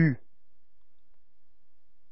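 A voice says the French letter name "U" once, briefly, with a falling pitch, then only quiet room tone.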